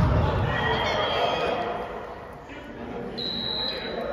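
Players' voices in a large, echoing gym hall, with a low ball thump at the very start. Near the end comes one short, steady referee's whistle blast.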